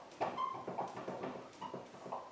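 Dry-erase marker writing a word on a whiteboard: a run of short scratchy strokes with a few brief squeaks.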